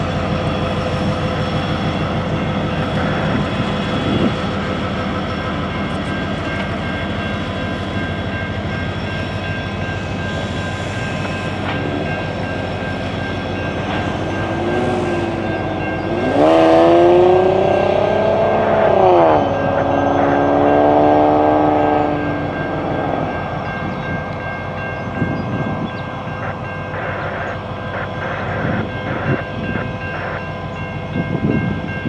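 Diesel locomotives of a CSX local (an SD40-3 and a GP38-2) running as they shove cars over the crossing. About halfway through, a multi-chime air horn sounds two loud blasts, the first bending in pitch.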